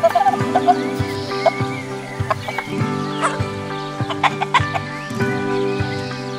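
A chef's knife chopping tomatoes on a wooden cutting board, with irregular sharp knocks of the blade on the wood. Chickens cluck over soft background music.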